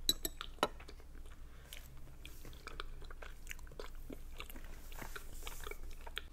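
Close-miked chewing of a mouthful of boiled dumplings, with moist mouth clicks and smacks throughout and a few sharper clicks in the first second.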